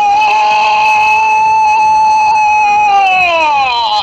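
Radio football commentator's long drawn-out 'gol' shout for a goal from a corner: one loud vowel held at a high, steady pitch, falling in pitch near the end before it breaks off.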